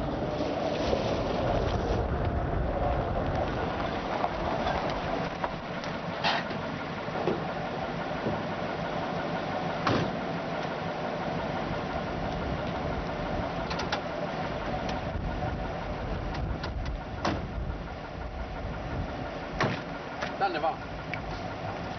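A vintage sedan's engine running steadily, with a few sharp knocks, the loudest about ten seconds in.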